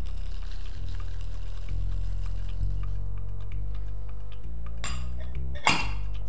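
Background music with a steady bass line. Near the end, chocolate chips are poured into a glass bowl of ricotta, a brief rattle and clink heard as two short bursts.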